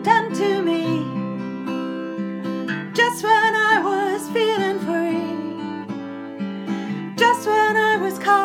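A woman singing a slow song, holding long notes with vibrato, over a strummed acoustic guitar.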